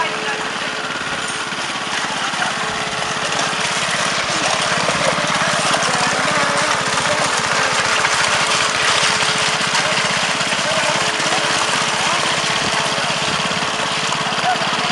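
Small petrol engine of a walk-behind power trowel running steadily as its spinning blades float a freshly poured concrete slab, growing louder after a few seconds.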